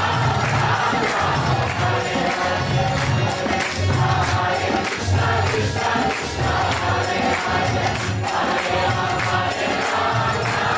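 Kirtan: a group of voices chanting in unison, with small brass hand cymbals (karatalas) clashing in a steady rhythm and low drum beats about twice a second.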